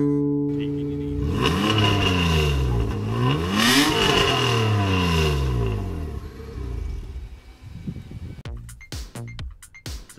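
A car engine revving, its pitch falling, climbing again about four seconds in and falling away, over intro music that fades after the first second or so.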